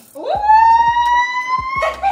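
A person's long, high squeal, sweeping up at the start and then held while it slowly rises in pitch for about a second and a half.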